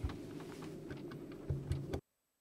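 Faint open-microphone background with scattered small clicks and a couple of low thumps near the end, then the audio cuts off abruptly to dead silence as the channel goes quiet.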